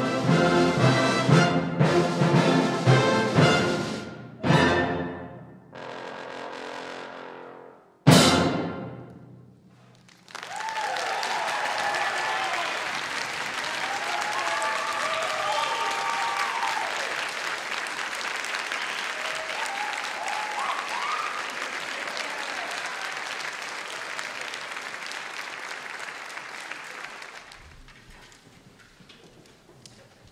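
Concert band with a trombone soloist playing the closing bars, ending on a loud last chord about eight seconds in that rings away. The audience then applauds with whoops and cheers for about seventeen seconds, dying away near the end.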